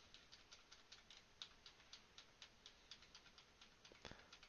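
Faint, rapid clicks of a computer key or mouse button pressed repeatedly, about five a second, stepping video forward one frame at a time.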